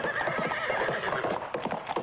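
Many horses galloping together: a rapid, dense drumming of hoofbeats.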